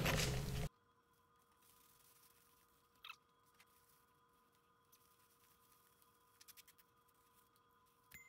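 A short burst of plastic bag crinkling that cuts off abruptly under a second in, then near silence with only a few faint clicks.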